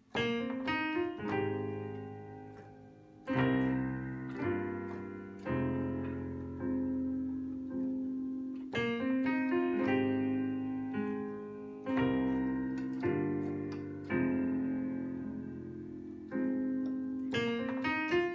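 Digital piano playing an R&B chord progression of A-flat major 7, C minor 7, G minor 7 and F minor 7, right-hand chords over single root notes in the left hand. Each chord is struck and left to ring and fade, with quick passing notes between some of them.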